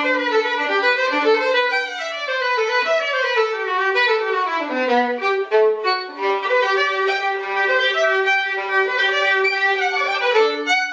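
Unaccompanied violin playing a fast passage of quick notes with double stops, with a descending run to a low note about halfway through.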